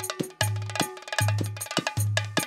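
Live band dance music with a heavy bass note on a beat about every 0.8 seconds, bright percussion strikes and a held melody line over it.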